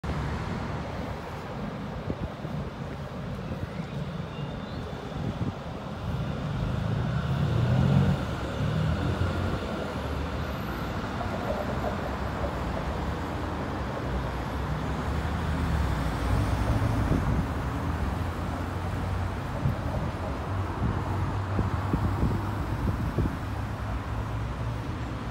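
City street traffic: cars driving past on a multi-lane road, with a tram passing close by midway. The loudest pass builds to a peak about eight seconds in.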